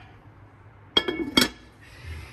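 Two sharp clinks of cookware, about half a second apart, each ringing briefly.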